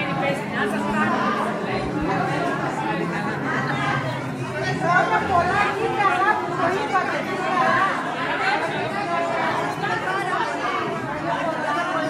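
Crowd chatter: a group of women talking and laughing at once, many overlapping voices with no single speaker standing out.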